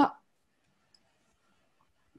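A woman's voice ends a word, then near silence with the dead quiet of a video call's noise suppression. One faint click comes about a second in.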